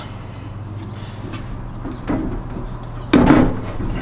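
Handling noise as thread tape is wrapped around the threads of a sink drain under a stainless steel sink: faint rustles and small ticks, with a short knock about two seconds in and a louder knock about three seconds in, over a steady low hum.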